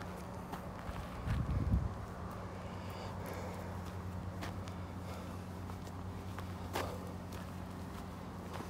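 Footsteps of a walker going up a dirt and gravel path, with a brief low rumble on the microphone about a second and a half in.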